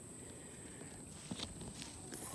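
Faint footsteps and rustling through leafy undergrowth, with a couple of soft snaps a little past halfway, over a steady high-pitched hum.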